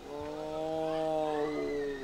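Amur tiger giving one long, steady, low-pitched moan lasting nearly two seconds, sagging slightly in pitch at the end.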